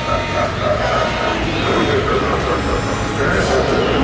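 Recorded soundtrack of a Halloween store animatronic playing: a voice and eerie sound effects over the store's background noise.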